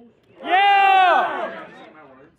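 A spectator's single long, loud shout, held on one pitch and then dropping away, as a batted ball carries into the outfield.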